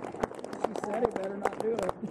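Scattered hand claps from an audience as applause dies away, with people talking faintly underneath.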